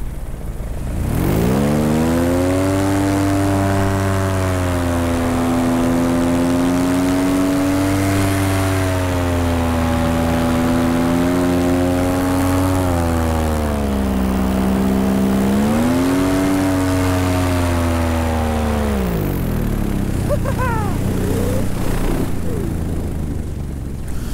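Paramotor engine throttled up from idle about a second in and held at high revs, its pitch dipping briefly and climbing again about two-thirds of the way through, then eased back toward idle about five seconds before the end.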